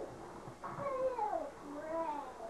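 A high-pitched cry about a second long, sliding down in pitch, with another beginning near the end.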